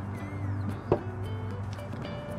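A single sharp knock about a second in: a drinking glass set down on a wooden table, over steady background music.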